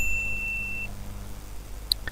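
A single steady electronic beep lasting about a second, then a sharp mouse click near the end.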